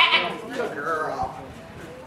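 High-pitched voices calling out, starting suddenly and loudly, then wavering and trailing off over about a second and a half.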